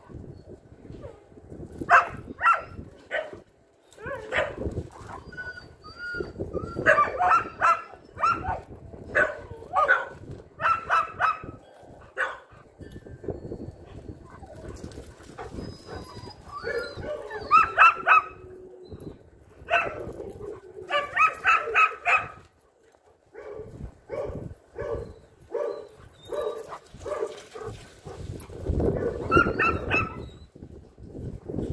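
German Shepherd dogs barking in play, in quick runs of several short barks and yips broken by a few pauses.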